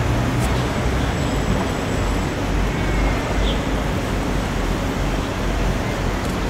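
Steady hum of city road traffic: a low rumble with an even hiss over it and no distinct single vehicle.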